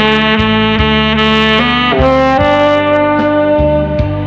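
Tenor saxophone playing a slow ballad melody over a backing track with bass and drums, holding one long note and moving to another about two seconds in.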